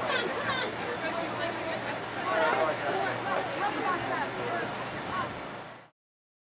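Indistinct voices of soccer players calling out across the field over a steady outdoor noise and low hum, fading out just before the end.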